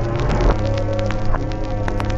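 A buzzing electronic drone of several held tones, with crackling clicks scattered throughout; the low tone shifts about half a second in.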